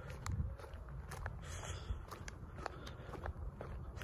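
Footsteps of Nike Air Monarch sneakers walking on a concrete sidewalk, with sharp little clicks and crunches of grit under the soles.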